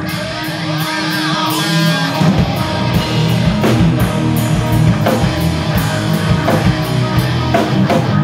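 Live rock band playing loud in a rehearsal room: distorted electric guitars over a drum kit. For the first two seconds the drums drop out under held guitar chords and a guitar run. Then the whole band comes back in with steady drum hits.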